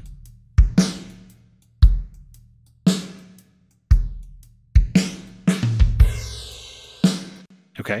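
A drum-kit loop of kick, snare and hi-hat plays through Baby Audio's TAIP tape-saturation plugin while its drive is turned down, so the tape distortion eases. Near the end a sweeping tape-flanging whoosh runs over the cymbals, the plugin's wow and flutter running in parallel with the dry signal.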